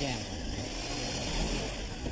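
A corded power tool running steadily with a low drone as plaster is cut away from a door jamb.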